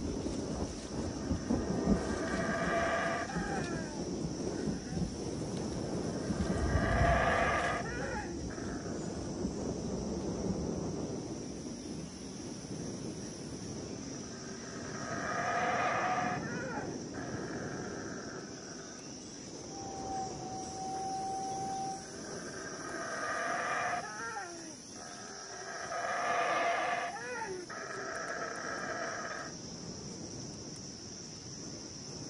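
Jungle ambience: a series of about five drawn-out pitched animal calls, each about a second long, over a steady high insect-like hum, with a low rumble in the first third.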